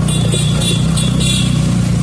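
Steady low drone of a vehicle's engine and road noise while driving in city traffic, with a quick run of about five short, high-pitched rings or beeps in the first second and a half.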